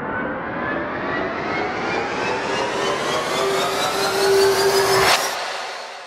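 A dramatic rising sound effect: a riser climbing steadily in pitch and growing louder, with a held low note under its last part. It cuts off suddenly about five seconds in with a hit, then fades away.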